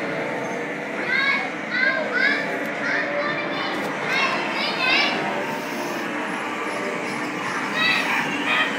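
Children shrieking and calling out, a run of short high-pitched cries between about one and five seconds in, over a steady background din of voices.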